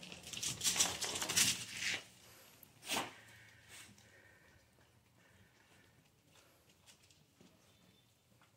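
A dog moving about on a concrete floor: about two seconds of rustling and scuffling, a single click about three seconds in, then near silence.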